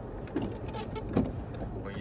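Road and engine noise inside the cabin of a moving Volkswagen car: a steady low rumble, with a brief knock just over a second in.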